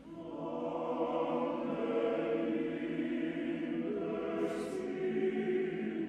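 Male choir singing held chords in several parts, coming back in after a brief break right at the start and swelling.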